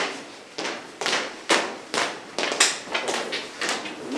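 A series of about ten sharp, irregularly spaced knocks or claps, each followed by a short echo off hard walls.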